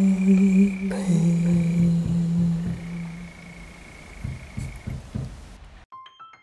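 A male singing voice holding a long unaccompanied note, stepping down in pitch about a second in and fading out around the middle; a few faint low thumps follow before the sound cuts off abruptly just before the end.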